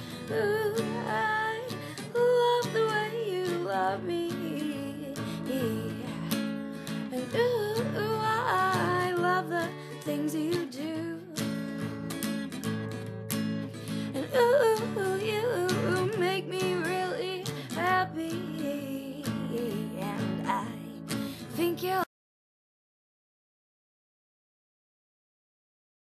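Acoustic guitar strummed under a woman's wordless vocal melody; the music cuts off suddenly near the end.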